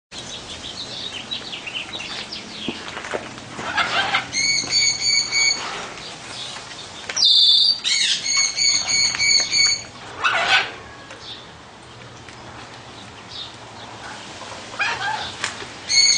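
Parrots calling. There are runs of five or six short, clear, evenly spaced notes, and louder harsh squawks come in between.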